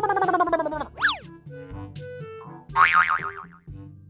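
Cartoon sound effects laid over light background music: a long falling glide in pitch, then a quick zip up and back down about a second in, and a short warbling wobble near three seconds.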